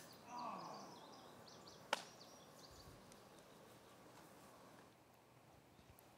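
Near silence: faint outdoor ambience, with a brief faint sound falling in pitch in the first second and one sharp click about two seconds in.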